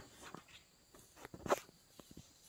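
A few short crunches and rustles in dry grass and undergrowth, the loudest about one and a half seconds in.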